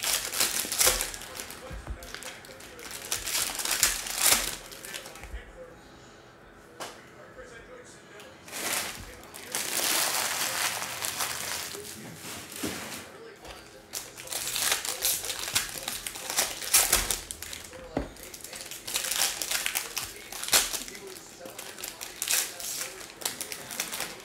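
Foil wrappers of Bowman baseball card packs crinkling as they are torn open, with cards handled between packs. The crinkling comes in repeated bursts a few seconds long, with a quieter stretch about a quarter of the way in.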